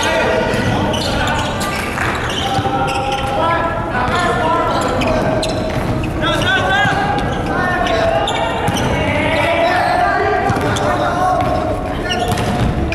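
Volleyball rally in a large gym hall: several players shouting and calling out over one another, with the ball being struck now and then, all carrying the hall's echo.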